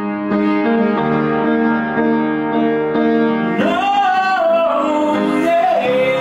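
Upright piano played in held chords, with a man singing over it. From about halfway through he holds one long, high note that bends in pitch.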